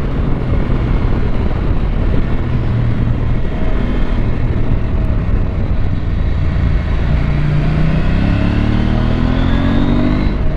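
Husqvarna Norden 901's parallel-twin engine running on the move. About seven seconds in it accelerates, its note climbing steadily in pitch to the end.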